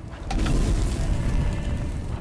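Film sound effect of a large fire bowl catching from a torch: a deep whoosh of flames that starts a moment in and holds steady, heavy in the bass.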